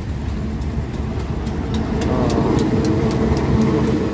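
KAI CC 201 diesel-electric locomotive passing close, its engine drone growing louder about halfway through as it draws level.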